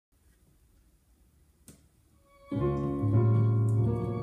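Near silence with a faint click, then, about two and a half seconds in, sustained chords on a synthesizer keyboard with a piano-like sound. The bass note moves to a new chord about half a second later, part of a gospel-style chord progression.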